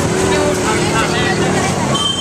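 Busy street ambience: many voices of people in the street talking over one another, with steady traffic noise beneath.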